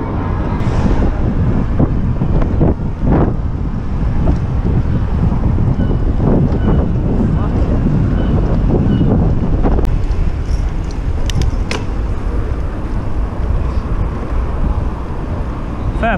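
Wind buffeting the microphone of a handlebar camera on a moving electric bike: a loud, steady rumble. Two brief sharp clicks come about two-thirds of the way through.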